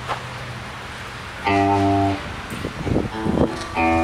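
A live rock band on amplified electric guitars and drums. About a second and a half in, a loud guitar chord rings for about half a second. A few sharp drum hits follow, and another chord comes in near the end.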